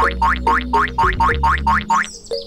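An added cartoon sound effect: a quick, even run of short rising springy chirps, about four a second, over background music with a steady low bass.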